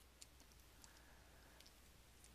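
Near silence: faint room tone with a few soft, isolated clicks.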